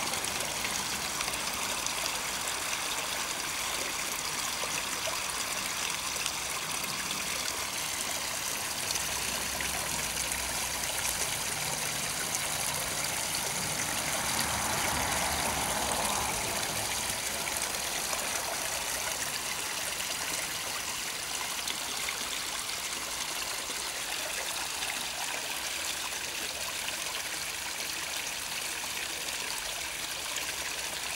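Water spilling steadily over a small rock waterfall into a garden pond, a continuous trickling splash that grows a little louder in the middle of the stretch.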